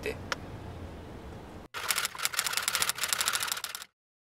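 Steady low rumble of a car's interior, then after an abrupt cut a rapid run of typewriter-style key clicks lasting about two seconds, a sound effect for on-screen text, ending in silence.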